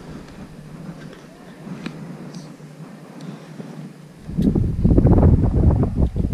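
Wind buffeting the microphone: a loud, rough rumble that sets in about four seconds in and covers everything else. Before it, only a few faint clicks.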